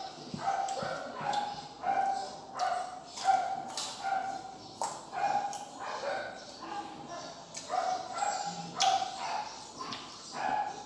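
A small dog barking repeatedly in short yaps, about one or two a second, over sharp crunches of green mango being bitten and chewed.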